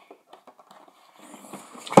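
Cardboard toy box being handled: faint rustling and small scrapes, then a sharp knock near the end.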